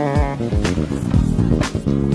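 deOliveira Dream KF five-string jazz bass with a Guajuvira top, played fingerstyle: a quick run of bass notes, with a sharp percussive hit about once a second.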